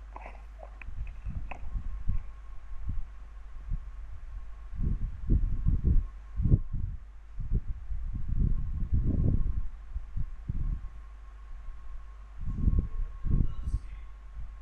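Muffled, distant voice heard only as irregular low rumbles, over a steady electrical hum with a thin high tone.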